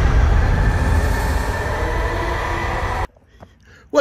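Intro soundtrack drone: a loud, dense rumble with faint held tones underneath, cutting off abruptly about three seconds in.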